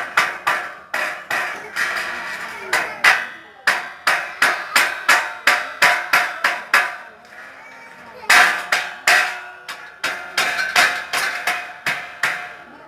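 Hammer blows on metal, about three a second, each knock ringing briefly, with a pause of about a second before the blows resume.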